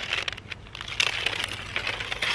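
Paper rustling and crinkling as sheets of dried-out Polaroid pack film are handled and pulled apart, with a louder rustle about a second in.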